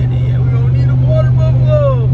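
Steady low drone of a car's engine and road noise heard inside the cabin while driving, with a man's voice sounding briefly in the second half.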